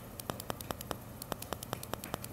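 A fork docking rolled-out pie crust: quick, light taps, about five a second, as the tines poke holes through the dough to the surface beneath.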